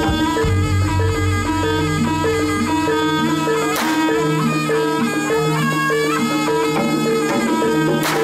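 Live Indonesian traditional music: a reedy wind-instrument melody over a repeating metallic note pattern and drums. Two sharp cracks cut through it, about four seconds in and again at the very end, which fit the performer's whip being cracked.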